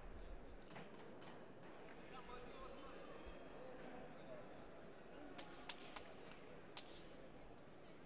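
Faint sports-hall ambience: distant voices murmuring, with a few light knocks about five to seven seconds in.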